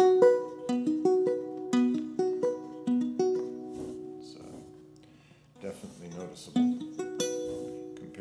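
Acoustic guitar fingerpicked in a repeating pattern of single notes, with the Vo-96 acoustic synthesizer switched on and its note duration at the shortest setting. The notes die away about halfway through, and a few more are picked near the end.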